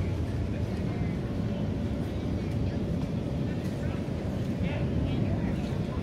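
Outdoor street ambience: a steady low rumble with faint voices of passers-by.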